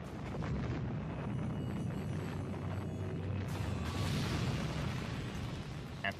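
Sound effect of a huge meteor airburst explosion: a continuous deep rumbling roar, with a hissing rush that swells a little past halfway and then eases.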